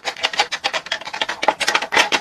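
Plastic cosmetic tubes clicking and rubbing against a clear acrylic display rack as they are set into its slots one by one: a rapid, uneven run of light clicks.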